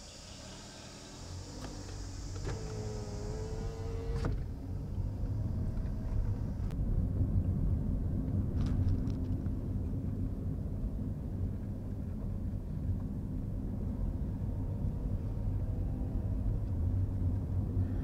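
Car engine and tyre noise heard from inside the cabin as the car pulls away and drives on, building to a steady low rumble. At first there is a high insect buzz from outside. It cuts off with a click about four seconds in.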